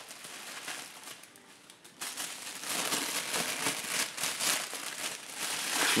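Plastic packaging and bubble wrap around a camera lens crinkling and crackling as it is handled, faint at first and louder from about two seconds in.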